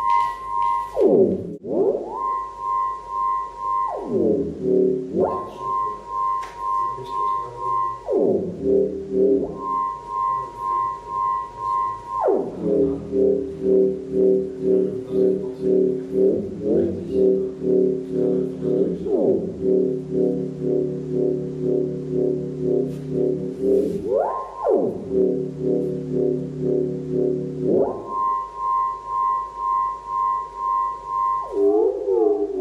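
Electronic synthesizer tones throbbing in an even pulse, a little more than once a second. A high steady tone and a lower, fuller chord take turns, joined by pitch sweeps that slide down and back up every few seconds.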